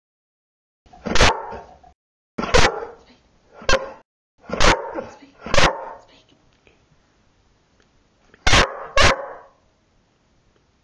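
Yellow Labrador retriever barking. It gives five sharp barks about a second apart, pauses, then gives two more in quick succession near the end.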